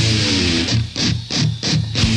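Live garage rock band playing, with distorted electric guitars and bass. In the second half the full sound breaks into about four short, choppy bursts over steady low notes.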